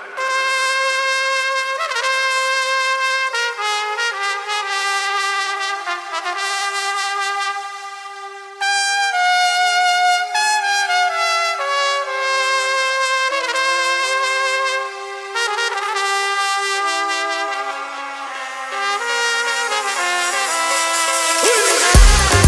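Solo trumpet playing a slow melody of long held notes with no drums or bass underneath, in the breakdown of a Latin house track.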